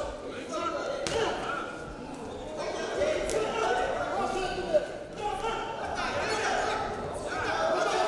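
Men's voices calling out in a large echoing hall during a boxing bout, with a few sharp impacts from the ring, about one, three and nearly five seconds in.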